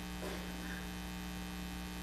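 Steady, faint electrical mains hum in the audio feed, a constant low buzz with its overtones, over quiet room tone.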